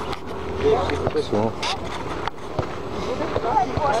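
Indistinct voices of people talking in the background, with a few light clicks and knocks.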